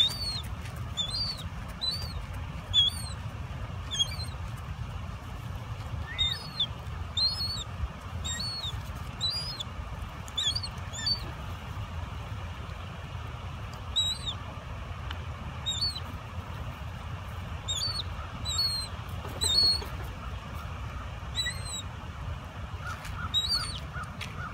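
Ring-billed gulls calling while they squabble over food: short, high-pitched calls repeated in quick clusters, over a steady low rumble.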